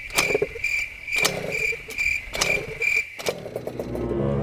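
Cricket chirping, a high trill pulsing about three times a second, cut in and out abruptly like an added sound effect. It stops suddenly about three seconds in. A few sharp clicks or knocks sound under it.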